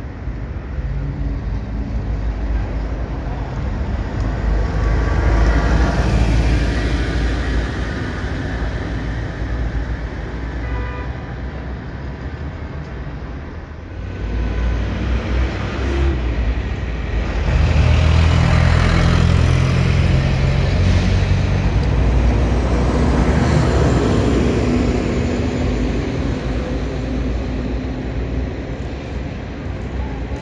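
Road traffic with articulated city buses driving past close by: a steady low engine drone and tyre noise that swells as each bus passes. The louder pass comes about halfway through.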